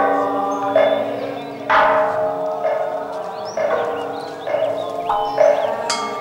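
Struck bell-like percussion in a slow, even beat of about one stroke a second, each stroke ringing out briefly with a bright pitched tone, typical of Buddhist temple ritual percussion.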